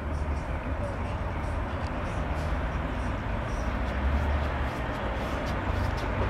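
Steady road traffic noise with a deep rumble underneath.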